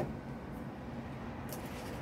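Faint steady low background hum with one brief, soft high-pitched rustle or tick about one and a half seconds in.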